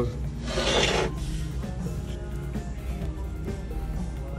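A brief rubbing, rasping sound about half a second in, lasting about half a second, then faint handling noises over a steady low hum.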